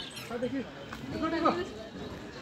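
Indistinct voices of other people talking in the background, with no clear words.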